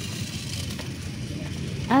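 Battery-powered Tamiya toy race car running along a concrete path, its small electric motor and plastic wheels making a steady, even whirring rattle as it moves away.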